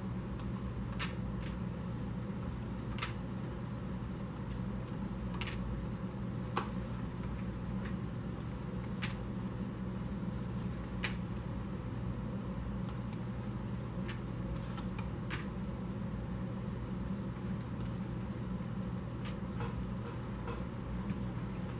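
Tarot cards being laid down one at a time on a polished wooden table, each landing with a short light click every second or two, over a steady low hum.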